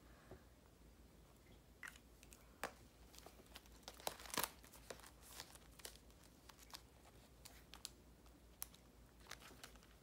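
Faint rustling and crinkling as the clear plastic pockets of a cash-envelope binder and paper dollar bills are handled, with scattered light clicks and a louder rustle a little past the middle.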